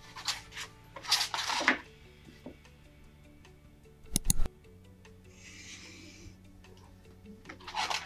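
Propelling pencil scratching along mount board against a mount cutter's straight edge: one stroke about a second in and a fainter one past the middle, with two sharp knocks just after halfway. Soft background music throughout.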